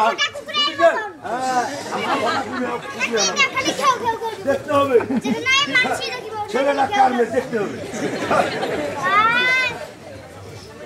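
Several voices talking and calling over one another, with a drawn-out rising-and-falling call near the end.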